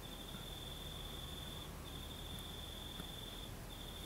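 Faint, steady high-pitched trill, breaking off briefly twice, over a low background hum.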